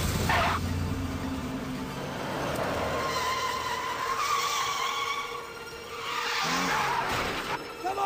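Car tyres squealing as the car drives off hard, in several squeals, the longest in the middle slowly rising in pitch, over the low sound of its engine.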